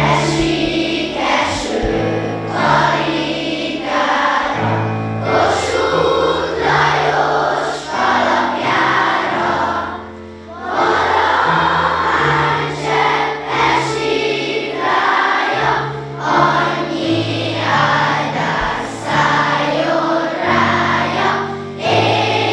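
Schoolchildren and adults singing a song together in a hall, over a low accompaniment holding long notes, with a short break between phrases about ten seconds in.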